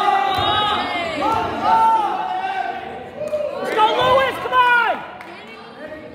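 Several people shouting from the mat side, loud drawn-out calls that die down about five seconds in.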